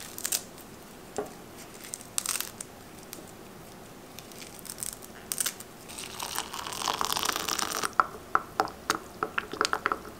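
Fresh mint leaves torn off their stems over a crinkling plastic bag. Then hot water is poured from a kettle into a glass of mint leaves for about two seconds, followed by a quick run of clinks as a spoon stirs against the glass.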